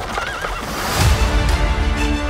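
Film-trailer sound mix: a short, wavering, high animal-like call, then a deep hit about a second in as orchestral music swells into a held chord.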